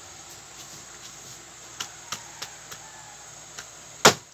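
Large kitchen knife carving a roast duck on a cutting board: a few faint, short taps of the blade in the second half, over a steady low hiss.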